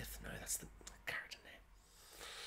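A man whispering and muttering under his breath: a few faint, broken words with sharp hissing sounds.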